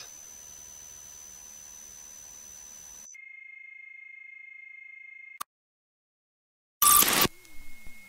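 Faint hiss with a thin steady electronic tone, giving way about three seconds in to a faint steady chord of electronic tones that ends in a click. After a second or so of dead silence comes a short, loud burst of noise, then a low electronic tone sliding downward.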